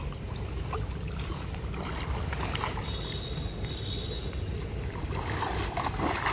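Swimming-pool water sloshing and lightly splashing around a swimmer, over a steady low rumble. The splashing thickens and grows louder near the end as front-crawl strokes and kicks begin.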